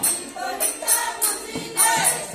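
Women's group singing a Matua devotional kirtan (hari sankirtan) with a barrel drum (dhol) and bright metal percussion struck in a quick, steady rhythm several times a second.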